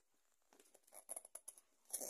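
Faint rustling and light taps of a cardboard file folder and paper sheets being handled, a handful of short soft sounds in the second half.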